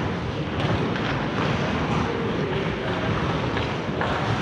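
Steady rumbling noise of an indoor ice rink during play, with a few faint clacks of sticks and puck from the far end of the ice.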